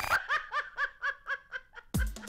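A woman laughing in a quick run of about eight 'ha' syllables, roughly five a second, each dipping slightly in pitch. The backing music cuts out just as the laugh begins.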